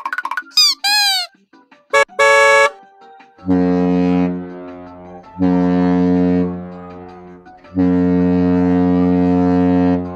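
Edited-in comedy sound effects covering swearing: two quick squeals that swoop up and down in pitch, a short buzz about two seconds in, then three long deep horn blasts, each fading a little before the next.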